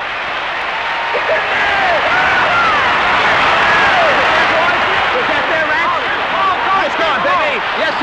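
Stadium crowd cheering a big play, swelling over the first few seconds into a loud, sustained roar with many voices shouting over it.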